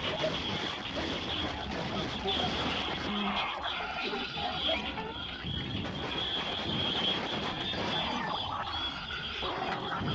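Lo-fi experimental cassette tape collage: a dense, steady wash of noise with a thin high whine running through it and indistinct voice-like sounds buried in the mix.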